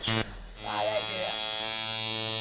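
Tattoo machine buzzing steadily as its needle inks lines into the skin of a calf. It runs briefly at the start, pauses, then starts again about half a second in and runs on without a break.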